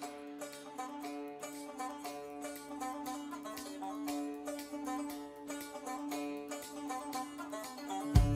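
Instrumental intro of a song: a banjo picks a quick, even run of notes over a steady held drone note.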